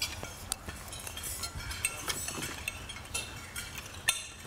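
Scattered, irregular clinks of cutlery and dishes from a room of diners, over low steady room noise.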